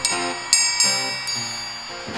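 Triangle struck four times, each strike ringing on with a high metallic shimmer, the later strikes coming closer together.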